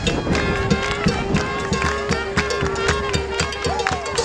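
Live New Orleans-style jazz and blues band playing close by amid a crowd, with a long held note over a steady beat of drums and handclaps.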